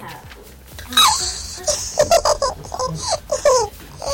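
A girl laughing in a string of short bursts, starting about a second in.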